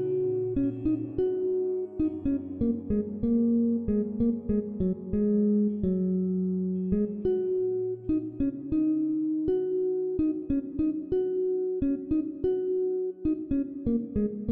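Ambient instrumental music: a steady run of short, quickly fading melodic notes over a lower bass line.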